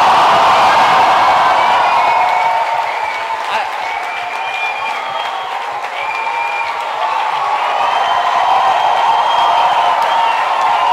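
A large audience cheering and applauding at length, with shrill whoops and screams held over the roar of the crowd.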